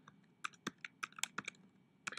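Typing on a computer keyboard: a quick, uneven run of individual key clicks that begins about half a second in.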